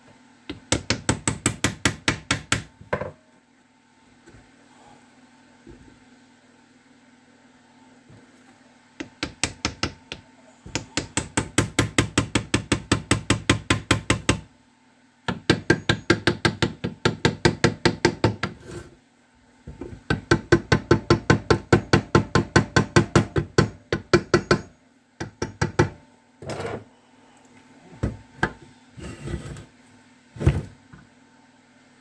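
Hammer blows on the metal casing of a Zündapp KS 600 motorcycle gearbox during disassembly: fast, even runs of about six blows a second lasting two to five seconds each, with short pauses between, then a few single knocks near the end.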